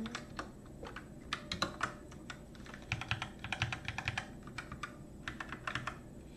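Typing on a computer keyboard while editing code: irregular clusters of key clicks, with a fast run of rapid keystrokes about three seconds in.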